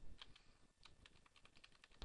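Faint, scattered keystrokes on a computer keyboard, backspacing over a typo in a line of code.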